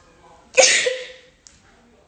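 A woman's single breathy sob, a short gasping burst with a little voice in it about half a second in. It is staged crying, put on for the camera.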